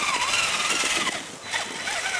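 A Traxxas Summit RC rock crawler with a brushless motor drives along, its motor and drivetrain giving a whine whose pitch wavers with the throttle. The whine stops about a second in.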